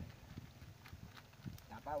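A few light clicks and knocks scattered through the moment, then a man's short shout near the end.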